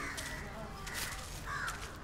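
House crows cawing: a few short, harsh caws about half a second apart.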